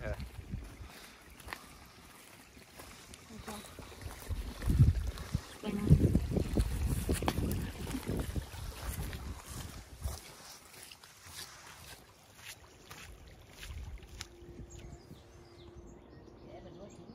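Footsteps crunching on a wet gravel path, with wind rumbling on the phone's microphone, loudest between about five and ten seconds in.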